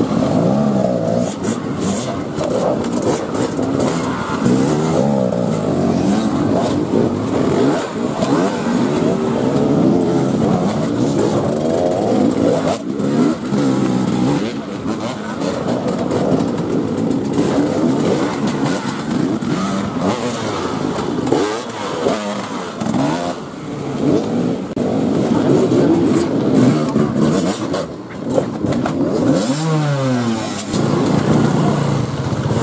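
Enduro dirt-bike engines revving up and down in repeated bursts as riders work their bikes up and over a wooden box obstacle. Several engines are heard at once, their pitch rising and falling throughout.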